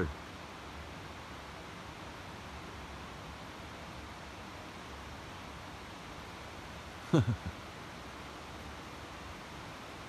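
Steady rushing of river water, even and unbroken, with a man's short vocal sound falling in pitch about seven seconds in.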